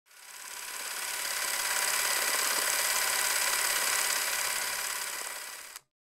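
A steady mechanical whirring noise with a hissy edge, fading in over the first second, then fading down and cutting off abruptly just before the end.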